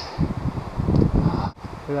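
Wind buffeting the camera microphone in irregular gusts, with a brief dropout about one and a half seconds in.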